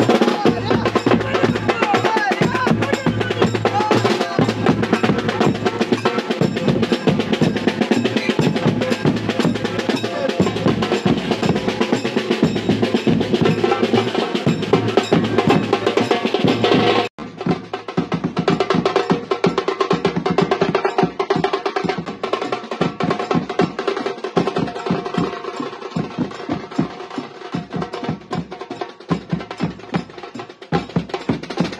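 Dhol-tasha drumming: a dense, fast roll of tasha drums over the heavier beats of dhol barrel drums, without a break. A little past halfway the sound cuts abruptly and goes on duller, with less treble.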